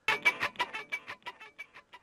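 Preview of a metal-style muted guitar strum loop in E minor at 90 BPM: quick, evenly spaced palm-muted strokes, about six a second.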